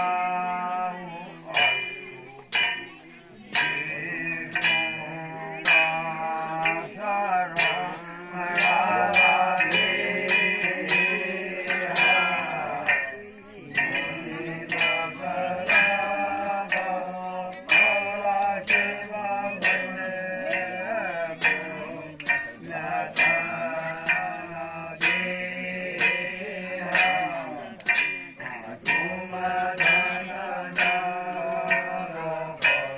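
Kumaoni jagar singing: a man's voice sings a long melodic devotional narrative through a microphone. Sharp percussion strikes come about once or twice a second throughout.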